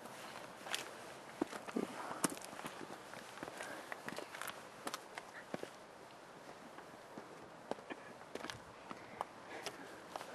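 Faint, irregular crunches and clicks of footsteps shifting on loose, rocky ground, more frequent in the first few seconds.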